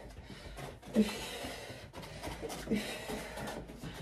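Faint room sound of a person moving about and settling into a desk chair, with soft rustles and shuffles.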